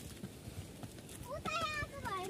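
Footsteps climbing concrete steps, faint scattered taps. About one and a half seconds in comes a short, high-pitched, wavering child's call.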